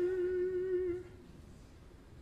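Operatic baritone holding a sustained note with vibrato at the end of a sung phrase, cutting off about a second in, leaving near silence.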